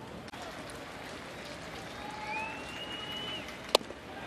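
Baseball stadium crowd murmur between pitches, with a faint whistle from the stands near the middle. Near the end a single sharp pop as the pitch smacks into the catcher's mitt.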